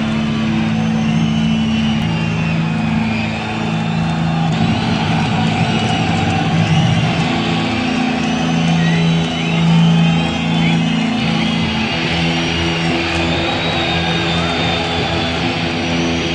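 Low, sustained droning notes from the stage, held on one pitch and shifting to another every few seconds, with a concert crowd yelling and whistling over them in the build-up before a thrash metal song.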